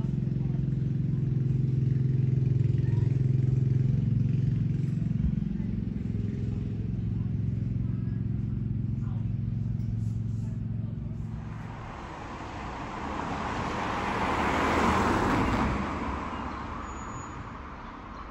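A steady low engine hum, like a vehicle idling, for the first eleven seconds or so, then a car passing: its road noise swells to a peak about fifteen seconds in and fades away.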